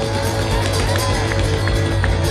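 A live string band of guitars, banjo, fiddle, upright bass and drums starting to play a song. A steady low bass sounds throughout, and from under a second in a strummed rhythm of about three strokes a second comes in, with crowd noise behind.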